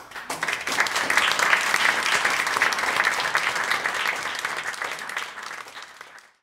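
Applause starting suddenly with many hands clapping, then thinning and dying away near the end.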